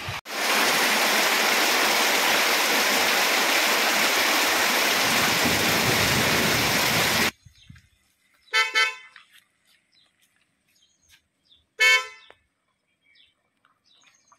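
A loud steady rushing noise cuts off suddenly about seven seconds in. A car horn then honks twice, two short beeps about three seconds apart.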